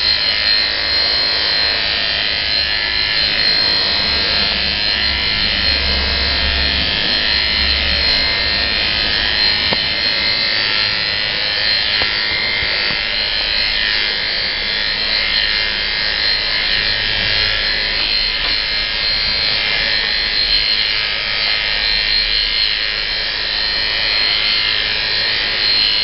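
Electric dog clippers with a comb attachment running steadily, an even buzz that does not break while they are run through a dog's coat.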